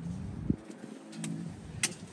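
Footsteps on concrete: three short, sharp taps spread across two seconds, over a faint low hum.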